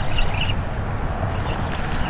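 Steady wind noise buffeting the microphone over open water, heaviest in the low end.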